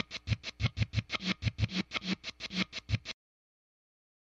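Closing music of the podcast: a fast, evenly pulsing figure with a low thump on each stroke, about six or seven hits a second, which cuts off suddenly about three seconds in.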